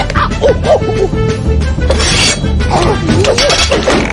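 Orchestral cartoon chase music with crashing and clattering effects and short arching cries, one crash about halfway through.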